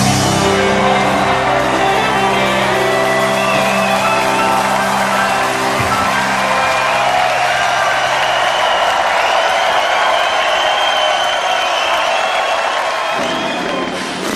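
A rock band's final held chord rings out and dies away over the first several seconds, while a concert audience cheers and whoops throughout.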